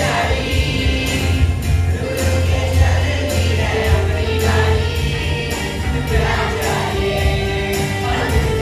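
Children's school choir singing a patriotic song in unison into microphones, over accompaniment with a steady beat about twice a second.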